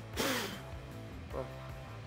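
A short, hard puff of breath blown onto a dirty brake caliper to clear the dust off it, a rush of air lasting about half a second near the start, with background music underneath.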